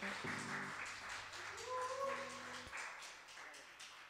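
Faint, scattered clapping from a small audience right after a live band's song ends, with a short rising voice call near the middle and a couple of low stray instrument notes.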